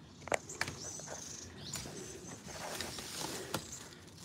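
Faint background with a few scattered light clicks and knocks.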